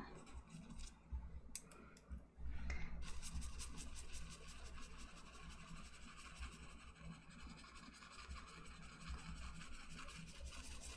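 Large bristle brush scrubbing wet oil paint into a canvas in quick, scratchy strokes. It starts after a few faint taps about two and a half seconds in and grows fainter toward the end.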